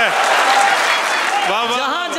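Audience applauding, a dense clatter of clapping. About three quarters of the way through, a voice calls out over it.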